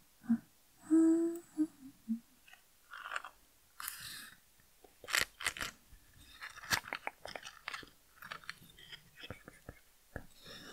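A woman humming a few short low notes, one held about a second in. Then a brief hiss just before four seconds in, and a run of small, sharp clicks and crackles close to the microphone.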